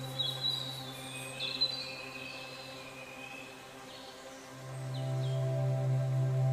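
Ambient background music: a steady low drone with soft held tones, briefly fading in the middle and swelling back near the end. Bird-like chirps sound over it during the first couple of seconds.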